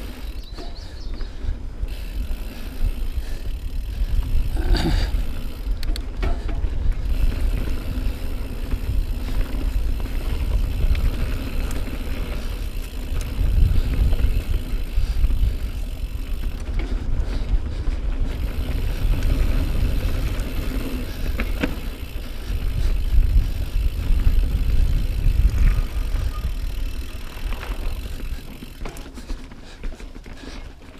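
2018 Norco Range full-suspension mountain bike descending a dirt singletrack: a steady low rumble of tyres on dirt and wind, swelling now and then, with a few sharp clattering knocks as the bike rattles over rocks. It quietens near the end.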